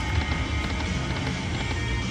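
Aristocrat Buffalo Gold slot machine spinning its reels, playing its steady electronic spin music and sounds over the low hum of the casino floor.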